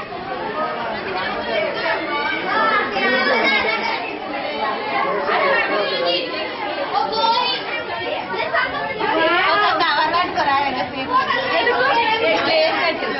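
A group of women and girls chattering, many voices overlapping at once with no single speaker standing out.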